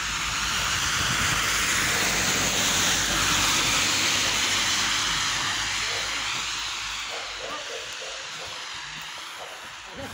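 A car driving past on the wet, slushy road, its tyres hissing on the wet asphalt. The hiss swells to its loudest about three to four seconds in, then fades away slowly.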